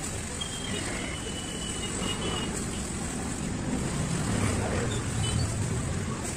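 Steady low rumble of street background noise with no distinct event.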